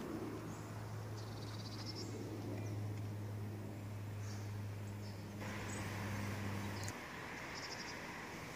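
Faint outdoor dusk ambience: a steady low hum that cuts off about seven seconds in, with faint high bird trills twice.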